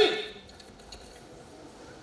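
A man's shouted word rings briefly in the hall and dies away in the first half second, followed by quiet hall ambience.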